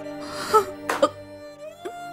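Sustained background music with held tones, under a woman crying: two short, sharp sobbing breaths about half a second and a second in.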